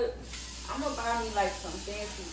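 Food sizzling in a hot pan on a gas stove, a steady hiss that starts suddenly just after the start, with voices over it.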